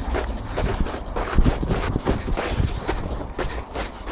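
Quick footsteps crunching in snow, about three a second, with wind buffeting the microphone.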